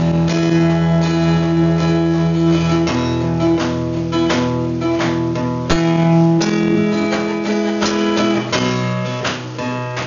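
Acoustic guitar being strummed in a live song, the chord changing about three seconds in and again a little past six seconds.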